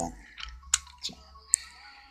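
Four or five short, sharp clicks and taps of a small die-cast model car, a Range Rover, being handled and set down on a model road.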